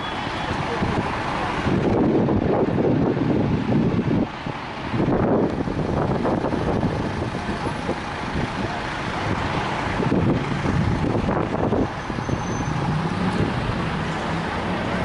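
City road traffic: cars driving past on a cobbled roundabout, a continuous traffic noise that swells and eases as vehicles go by.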